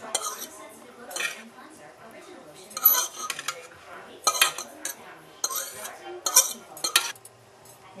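A utensil scooping cooked ground turkey out of a pan, with irregular clinks and scrapes against the pan about once a second.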